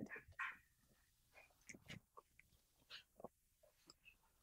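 Near silence, with faint scattered clicks and small mouth sounds of a German shorthaired pointer puppy on its dog bed taking and eating a treat.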